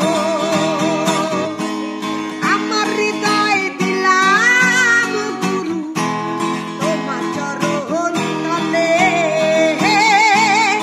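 A woman singing a Bengali folk song, holding long wavering notes, over a strummed acoustic guitar.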